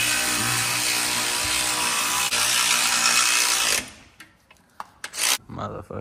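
A power tool running steadily with a motor hum for nearly four seconds, then cutting off abruptly, followed by a couple of brief knocks.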